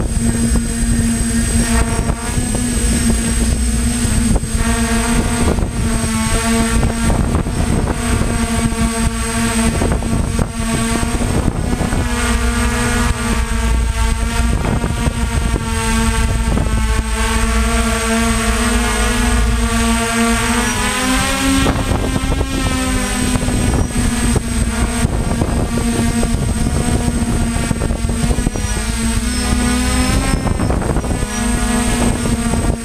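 The six electric motors and propellers of a DJI F550 hexacopter humming, close up, with wind buffeting the microphone. The pitch holds steady for about twenty seconds, then shifts up and wavers as the motor speeds change, and again near the end.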